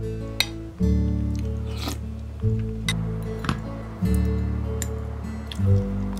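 Background music with a low bass line that moves to a new note about every second and a half. Over it come a handful of light, sharp clinks of a metal spoon and chopsticks against ceramic bowls and plates.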